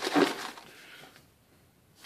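Packaging being handled: a short rustle of paper or plastic, about a second long, starting suddenly, and a brief faint rustle near the end.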